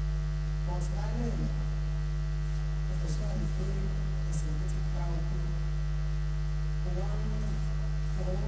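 Steady electrical mains hum from the sound system, unchanging throughout, with faint voices murmuring in the background.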